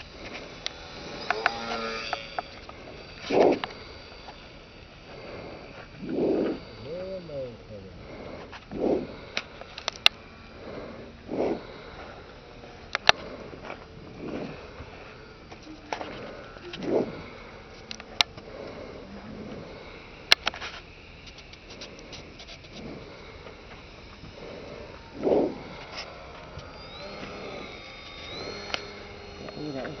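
Short, separate voice-like calls several seconds apart, some falling in pitch, with a few sharp clicks between them.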